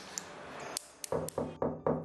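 Rapid knocking on a door, about five quick knocks starting about a second in.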